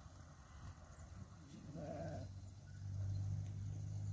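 A sheep bleats once, briefly and faintly, about two seconds in. A low steady hum comes up near the end.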